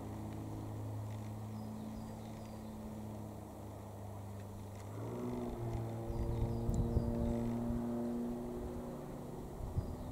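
XtremeAir XA42 aerobatic monoplane's six-cylinder Lycoming piston engine and propeller droning steadily as it flies its display overhead. About halfway through the note steps up in pitch and grows louder as power is added.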